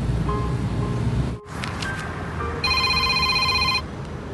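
Background music, then a phone's electronic trilling ring for about a second, starting a little past halfway.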